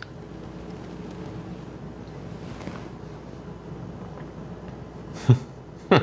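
Quiet room with a low steady hum while bourbon is sipped. Near the end there are two short vocal murmurs from a taster, the second falling in pitch like an appreciative 'mm'.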